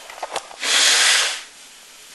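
A man breathing hard through his mouth close to the microphone while his mouth burns from a bird's eye chilli: a couple of small mouth clicks, then one long, loud rush of air lasting under a second.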